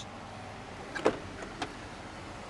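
A few sharp clicks and a light knock about a second in, and one more shortly after, from the pickup's rear access door latch being released and the door swung open, over a steady low background hiss.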